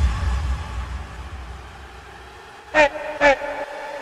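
Intro of a bass-boosted rap track: a heavy sub-bass note that fades out over the first two seconds, then two short vocal shouts about half a second apart near the end.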